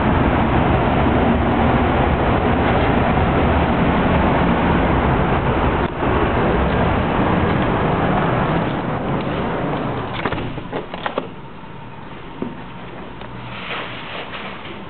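Steady road traffic noise from a busy street. About ten seconds in, a few clicks and knocks come as a balcony door is shut, and the traffic drops away to a quieter room.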